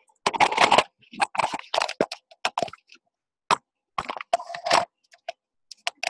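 Irregular rustling, knocking and clicking from a handheld camcorder being handled and swung around, a string of short uneven bursts with brief quiet gaps between them.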